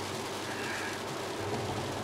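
Interior cabin noise of a Hyundai Veloster N driving on a wet track: a steady low engine hum under an even hiss of tyres on the wet surface.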